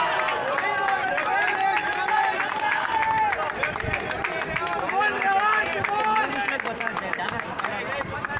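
Several people's voices talking and calling out over each other close by, a steady run of overlapping chatter.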